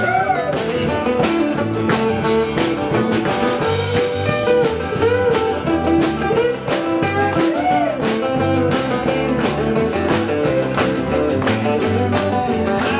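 Live band playing an instrumental passage of a blues-country song: strummed acoustic guitars, electric guitar and drums over a steady beat, with a lead line of bent, gliding notes on top.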